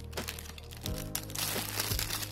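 Thin clear plastic bag crinkling and crackling as a small tin is worked out of it by hand, over background music with held notes.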